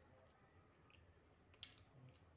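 Faint, soft clicks of fingers mixing cooked rice and curry on a plate, with one sharper click near the end.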